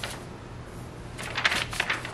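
Paper rustling as loose instruction sheets are pulled out and handled, a few short crinkles starting about a second in.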